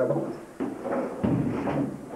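Dull knocks and rustling noise, with a heavier low thump about a second in, in a small room.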